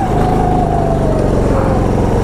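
Go-kart engine running at high revs under the driver, its pitch sinking slowly through the two seconds.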